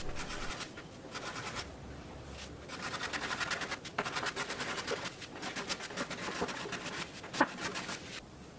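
Steel card scraper worked by hand over a cherry tabletop, cleaning off dried glue, in quick runs of short scraping strokes with brief pauses between them. There is one short, louder scrape near the end.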